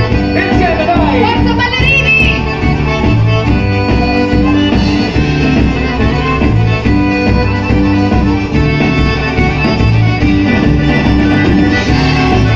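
Live amplified band playing upbeat southern Italian folk dance music, with a steady pulsing bass beat and held tones above it; a sliding melody line runs through the first two seconds or so.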